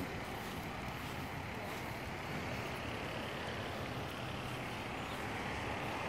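Steady outdoor background noise: an even hiss and low rumble with no distinct events.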